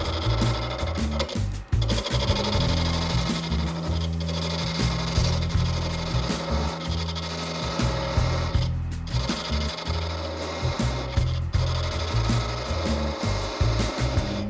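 A skewchigouge, bevel up, taking a light cut on a spindle turning on a wood lathe: a steady scraping rub of the edge on the wood. Background music with a bass line plays under it.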